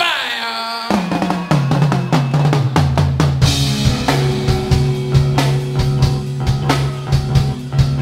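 Live rock band starting a song: drum kit, bass guitar and electric guitar come in about a second in and play the intro, with the drums hitting steadily throughout.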